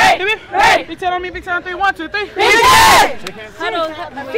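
Girls' rugby team shouting together in a huddle: several voices calling out over one another, then one loud group shout about two and a half seconds in, the team cheer that breaks the huddle.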